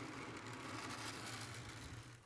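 Faint steady low hum under an even hiss, with no distinct events.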